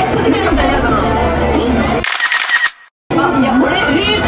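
Speech-like voice over background sound inside a photo-sticker booth. About two seconds in there is a bright, crackly burst, a camera-shutter-like effect, then the sound cuts out abruptly for about half a second before the voice resumes.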